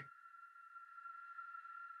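Near silence but for a faint, steady high-pitched drone with a few overtones: the quiet background music bed under the narration.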